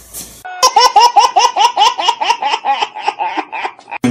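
High-pitched laughter: a rapid run of short repeated 'ha' sounds, about five a second, starting suddenly about half a second in and running on almost to the end.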